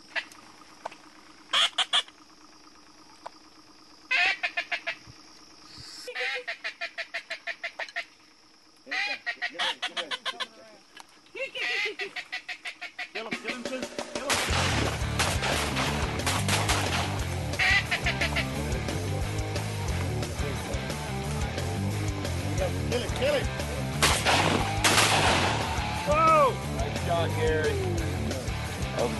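Duck calls: several short runs of quick, rhythmic quacks with pauses between them. About halfway through, music with a steady bass comes in and carries on.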